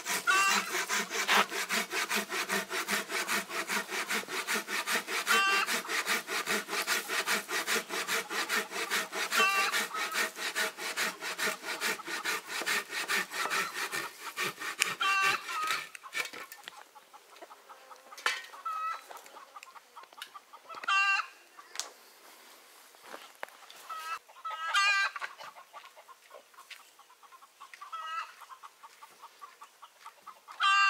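Hand saw cutting a wooden beam with quick, steady back-and-forth strokes. The sawing stops about halfway through. Chickens call at intervals throughout.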